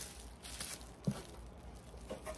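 Faint crinkling of bubble-wrap packaging as a wrapped hardcover book is handled and turned over, with one short low sound about a second in.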